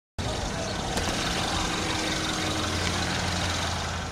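A car engine running close by with steady street noise: a low, even engine hum under a broad rush of sound that starts abruptly and holds level.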